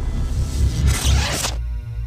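Electronic logo intro music over a deep bass rumble. A whooshing noise swell builds and cuts off suddenly about one and a half seconds in, leaving a held synth chord.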